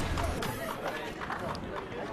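Background chatter of a crowded darts tournament hall: many overlapping voices murmuring, with a few faint short clicks.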